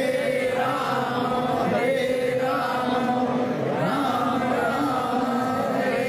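Devotional group chanting: a man's voice leads through a microphone and others sing along, with long held, sliding notes.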